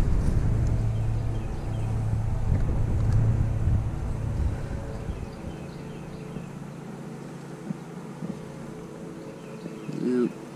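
A low steady rumble that fades away about halfway through, leaving the faint hum of honeybees swarming over an open hive frame.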